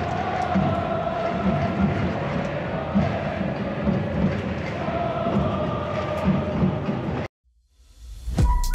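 Stadium crowd of football supporters chanting together in unison, with a regular low drum beat underneath. The chanting cuts off suddenly about seven seconds in.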